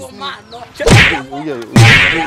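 Two loud, sharp cracks about a second apart, each with a short tail, over people's voices.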